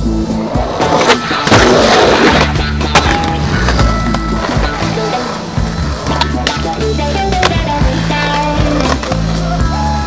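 Skateboard wheels rolling on pavement with a few sharp clacks of the board, heard together with a music soundtrack that has a steady bass line.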